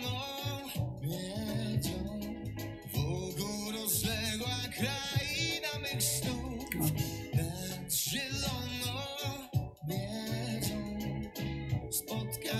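A sung ballad played back, with a singer's voice over guitar and a steady bass line.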